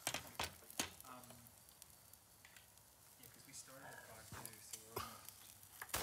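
Lamb chops sizzling quietly on a barbecue grill, with a few sharp clicks in the first second.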